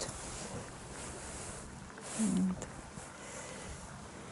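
A woman's brief hum or murmured syllable about two seconds in, over faint background noise.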